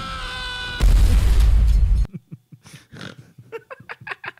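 A sound clip played back in the studio: a long, steady, high-pitched scream that breaks off under a second in, followed by a loud, rough burst of noise with a heavy low rumble lasting about a second.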